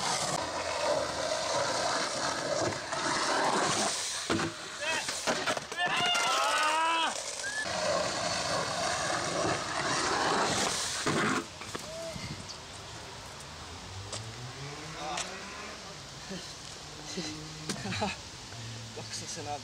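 Skateboard wheels rolling over rough concrete, with voices calling out over the noise; the rolling stops about eleven seconds in, leaving a quieter background.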